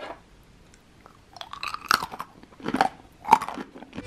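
A person biting into and chewing crunchy coated roasted almonds as a crunch test: a run of irregular crunches starting about a second in, the loudest near the end.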